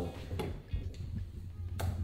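Two short clicks, a faint one about half a second in and a sharper one near the end, over a low steady hum.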